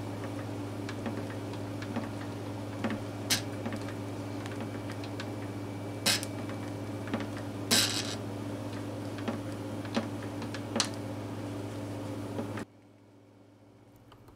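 Steady electrical hum with a few sharp, light clicks scattered through it; the hum cuts off suddenly near the end.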